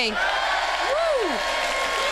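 Cheering and applause that start suddenly, with one voice calling out a long rising-and-falling "hooray" about a second in.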